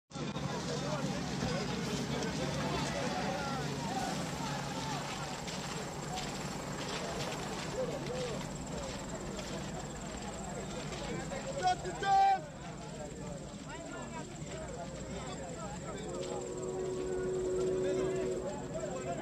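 Indistinct chatter of many men's voices talking over one another, with a brief loud call about twelve seconds in and a steady pitched tone coming in near the end.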